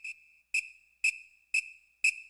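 Short, evenly spaced whistle blasts, about two a second, all on one high pitch: a drum major's whistle counting off the tempo for the marching band.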